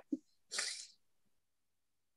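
A short breathy vocal sound, about half a second in, from a meeting participant heard over a video call; a faint blip comes just before it.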